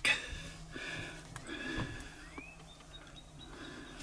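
Faint clicks and rustles of a phone being handled in a plastic windshield phone mount, over a low steady hum.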